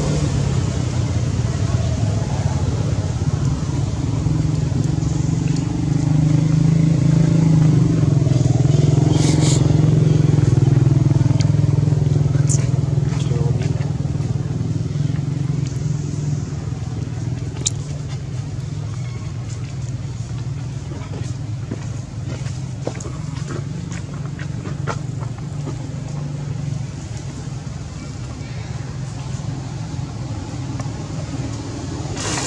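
A steady engine drone, like a motor vehicle running, growing louder from about six seconds in to about twelve and then easing off.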